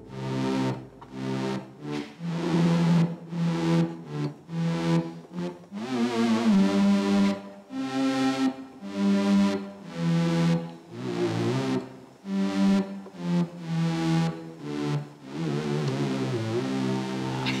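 Moog synthesizer played by hand by non-musicians: a loose, meandering run of held electronic notes changing about every half second, with wavering pitch slides a few times.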